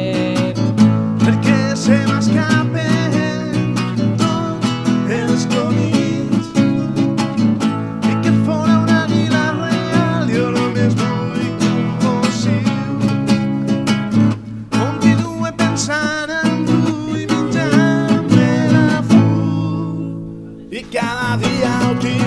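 A song: strummed acoustic guitar with a voice singing. The music thins out and drops in level briefly about twenty seconds in, then comes back.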